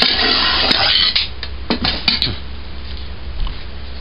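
An aluminium pressure cooker being handled and moved away: about a second of metal scraping and rattling, then a few light clinks.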